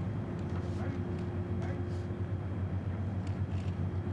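Outdoor ambience: a steady low mechanical hum with a held tone running through it, faint distant voices and a few light clicks.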